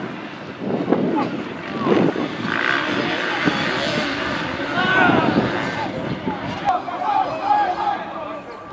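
Players' shouts carrying across an outdoor football pitch, over a broad rushing noise that swells for a few seconds in the middle.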